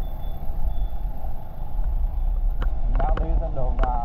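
Steady low rumble of riding a motor scooter through city traffic, with the scooter's engine and road noise close to the microphone. A faint, high, on-off beeping runs through the first second, and a voice is briefly heard near the end.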